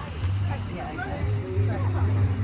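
Indistinct chatter of several people talking at once over a low steady hum.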